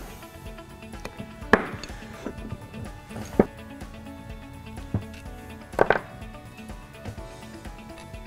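Soft background music under a few sharp metallic clinks of a steel wrench and bolts being handled on a workbench as a vacuum pump's bolts are loosened and the pump is pulled apart. Two of the clinks come close together about six seconds in.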